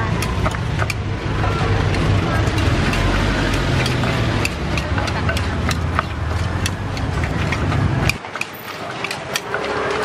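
Wooden pestle knocking in a clay mortar and a knife cutting ingredients over it: irregular sharp clicks and knocks, over a steady low engine rumble of street traffic that cuts off about eight seconds in.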